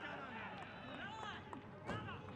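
Men's voices calling out on a football pitch, several overlapping, with a single sharp thud of a football being kicked near the end.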